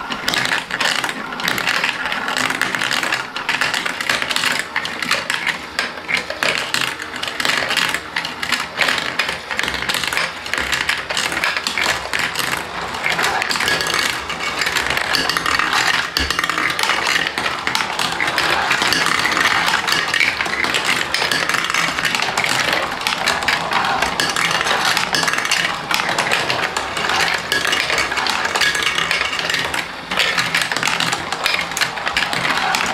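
Many plastic marbles rolling and clattering at once through a VTech plastic marble-run track. They drop through funnels and ride the wheel lifts in a dense, continuous rattle of small clicks and knocks.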